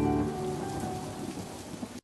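Background music under a weather-forecast graphic dying away about a third of a second in, leaving a fading wash of noise that cuts off abruptly at the end.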